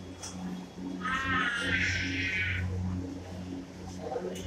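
A drawn-out, high-pitched wailing cry lasting about a second and a half, over a low steady hum.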